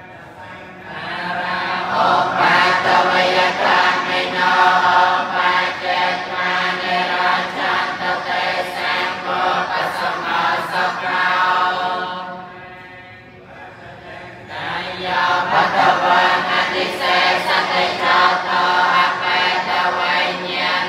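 Buddhist monks chanting together, a group of voices in unison. The chant runs in two long passages, with a short drop in level about twelve seconds in.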